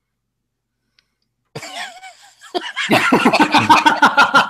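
Silence, then about a second and a half in a man starts laughing: a breathy start, then loud, quick, rhythmic laughter.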